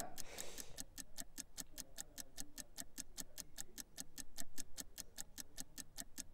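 Fast, steady ticking of a countdown-clock sound effect, about eight ticks a second, as the sale timer runs down.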